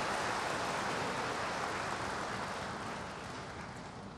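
Large indoor audience applauding, the clapping slowly dying away.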